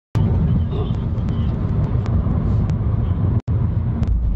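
Steady low road and engine rumble of a car in motion, heard from inside the cabin, with a few faint ticks. It drops out for an instant near the end.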